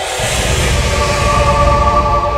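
Brutal death metal with distorted guitars and drums: a track opening after a silent gap, swelling to full loudness just after the start and then running as a dense wall of sound with heavy low end and held guitar tones.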